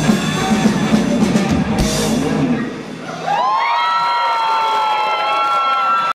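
A live rock band with drums, bass and electric guitars plays the last bars of a song and stops about three seconds in. Several high whines then slide up and hold steady to the end: electric guitar feedback from the amps as the song ends.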